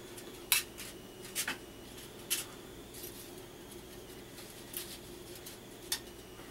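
Thin metal embossing-foil feathers being handled and laid over one another on a metal cookie sheet: a handful of light, sharp metallic clicks and crinkles at irregular intervals, over a faint steady hum.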